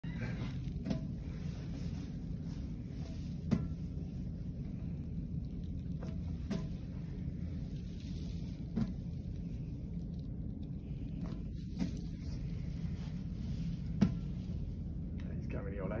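Steady low room murmur, likely distant voices, broken by about seven short sharp knocks or slaps a few seconds apart, the loudest near the end.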